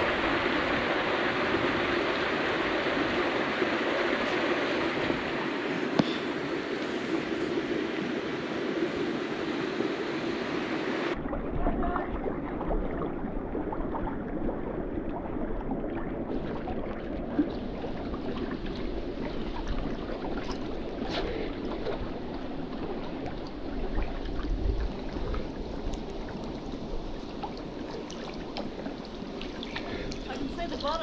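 Steady rush and gurgle of creek water in a rock pool, with small splashes and lapping from a swimmer. About eleven seconds in the sound turns duller and closer, with lapping at the water's surface.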